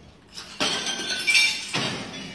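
A sudden crash of glass with clinking, starting about half a second in and lasting about a second, followed by a second, shorter crash near the end.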